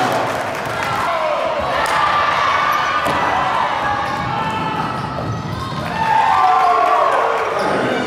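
A basketball dribbled on a hardwood gym floor, a few echoing bounces, under players' and spectators' voices in the hall.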